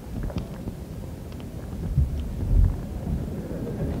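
Low rumble with a few soft thumps and faint clicks: microphone handling noise as a microphone changes hands before the next question.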